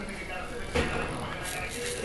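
Indistinct background voices over low room noise.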